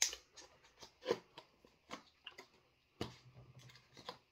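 Cardboard chip-challenge box being handled and closed up: a run of small, irregular clicks and taps from the packaging.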